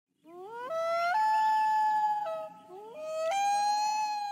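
Common loon wailing twice: each call glides upward, then holds a long, clear note that steps up in pitch. The second call starts about halfway through.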